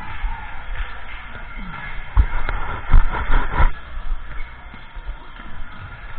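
Gym noise during a volleyball rally: shoes shuffling on the court floor and a few sharp thumps about two and three seconds in, heard through a body-worn action camera, with music playing in the background.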